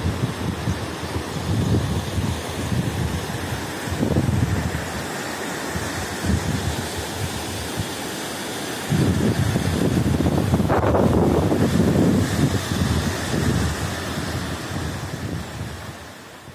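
Floodwater of a swollen river rushing, mixed with wind buffeting the microphone. The noise swells about four seconds in and again from about nine to thirteen seconds, then eases.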